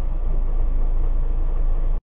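Steady low road rumble and engine noise of a moving songthaew, a pickup truck with a covered rear passenger bed, heard from inside the rear bed while it drives.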